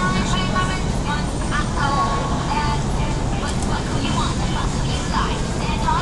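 Indistinct voices talking in snatches over a steady low rumble of background noise.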